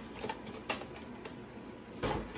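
A few faint clicks and light rustling of toy packaging being handled, the clearest click a little under a second in.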